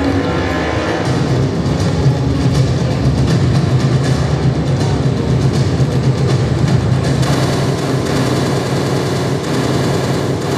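A loud, steady vehicle-like rumble with a noisy wash over it, played as part of the mime's soundtrack over the hall's loudspeakers.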